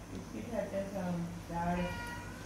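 Quiet, indistinct voices talking, with short higher-pitched vocal sounds.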